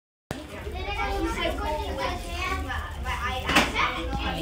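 Many children chattering at once in a classroom, their voices overlapping, with a sharp knock about three and a half seconds in.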